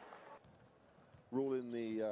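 Near silence for about a second, then a man's voice holding one drawn-out vowel sound for about a second near the end.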